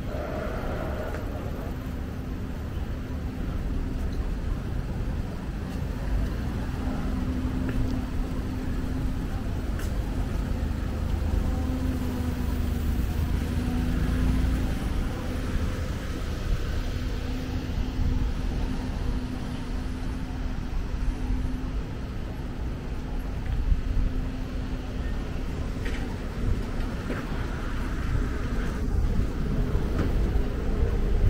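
Street ambience on a narrow town street: a steady low rumble with an on-and-off hum, typical of vehicles passing or idling nearby.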